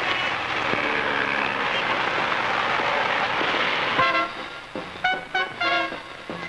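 City street traffic with car horns tooting over a steady wash of noise. About four seconds in it gives way to short, clipped brass phrases of film music.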